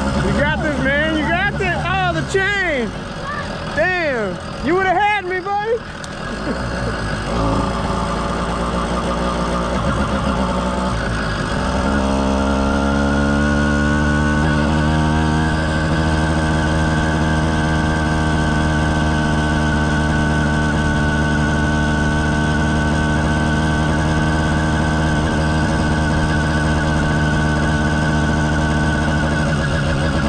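Two-stroke motorized bicycle engine under way, revved up and down in quick swoops for the first several seconds, then held at a steady cruising speed.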